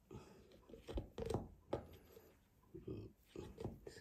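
Clear plastic tub lid being handled and lifted off, with a few soft plastic clicks and rustles, the loudest a little over a second in and more near the end.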